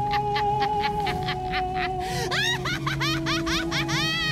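Music from an animated TV clip: a held note over quick regular ticks, joined about halfway through by a cartoon character laughing in quick repeated rising-and-falling laughs.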